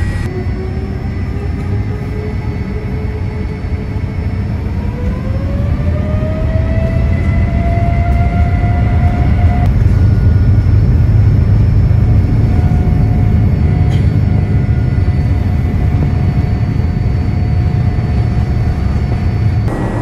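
Boeing 787-8's Rolls-Royce Trent 1000 turbofans spooling up for takeoff, heard from inside the cabin: a whine that rises in pitch for several seconds, then holds steady over a deep rumble that grows louder as the takeoff roll builds.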